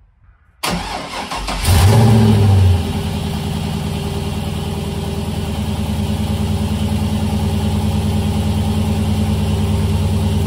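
LS V8 engine in a swapped Mazda RX-8 cranking on the starter for about a second, catching and flaring up briefly, then settling into a steady idle that slowly rises. It starts and runs on its newly wired standalone fuse box.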